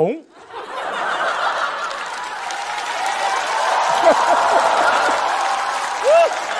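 Studio audience laughing and applauding, starting about half a second in and holding steady, with a few scattered voices calling out.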